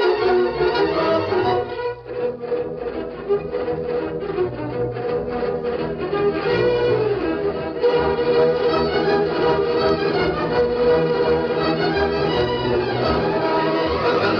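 Orchestral music led by violins, with a run of quick, short string notes about four a second for a few seconds near the start.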